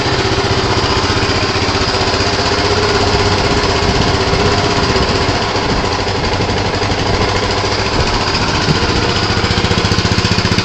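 Harley-Davidson MT350 military motorcycle's single-cylinder Rotax engine idling steadily with an even, rapid beat. It runs cleanly, with no odd noises.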